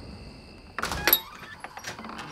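A wooden door being unlatched and pulled open: a sudden clatter a little under a second in, then a few short clicks from the latch and hinges.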